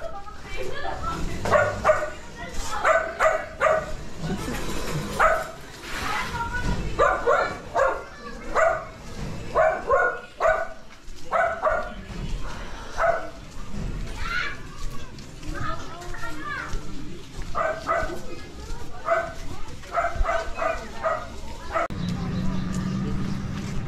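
A dog barking over and over, mostly in quick runs of two or three barks, with people's voices around it.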